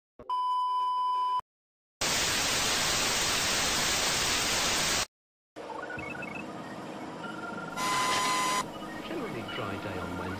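Television test-card sound effects: a steady one-second test-tone beep, then after a short gap about three seconds of loud TV static hiss that cuts off suddenly. After another brief gap, a softer layer of hiss with scattered small beeps and a second short tone burst about eight seconds in, with garbled voice-like sounds near the end.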